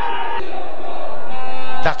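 Stadium crowd noise after a goal, a dense roar that swells steadily and cuts off abruptly near the end.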